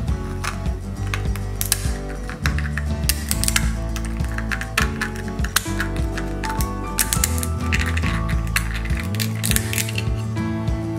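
Background music, over which a metal crab cracker crunches through crab leg and claw shells in a string of sharp cracks and clicks.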